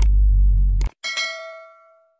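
Subscribe-button animation sound effects: a deep low boom that cuts off just under a second in with a sharp mouse-click, then a bright notification-bell ding that rings out and fades.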